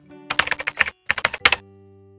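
Computer keyboard typing sound effect: two quick runs of key clicks with a brief pause between them, over a soft sustained music chord that rings on after the typing stops.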